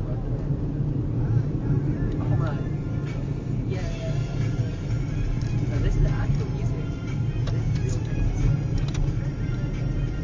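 Steady low rumble of a car's engine and tyres heard from inside the cabin, driving at around 30 mph.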